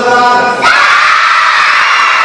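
A voice holds one drawn-out note through a microphone. About half a second in, a crowd of children suddenly breaks into loud cheering and shouting that keeps going.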